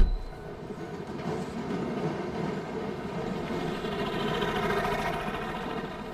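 A car door slams shut right at the start, the loudest sound here. A steady rumbling noise follows, swelling over the next few seconds and easing near the end.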